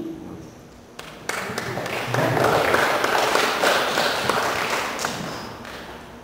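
A small crowd applauding. The clapping starts about a second in, builds quickly and fades out near the end.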